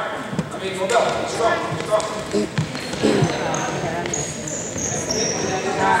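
Basketball game in an echoing gym: voices calling out, a basketball bouncing on the hardwood court, and a few high squeaks of shoes on the floor through the middle.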